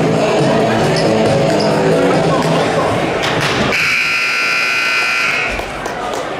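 Music plays until a thump about three seconds in. Then the gym's scoreboard horn sounds, one steady buzz held for nearly two seconds, signalling the start of the fourth quarter.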